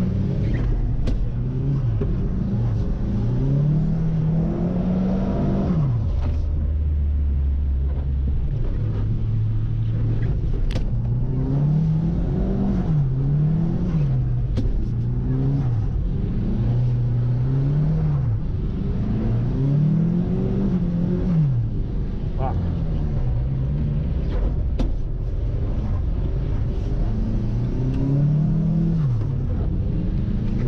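Nissan S15's engine heard from inside the cabin, revving up and falling off again and again every couple of seconds while the car is drifted. A few sharp knocks sound through the cabin.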